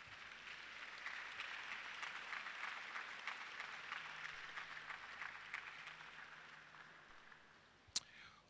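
Faint applause from a congregation, an even patter of many hands that dies away about six or seven seconds in. A single sharp click comes right at the end.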